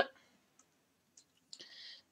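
A few faint, scattered clicks in a pause between words, then a short, soft breath in near the end.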